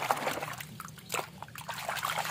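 Water sloshing and splashing in a plastic tub as a hand swishes a muddy toy around under the surface, in quick irregular splashes.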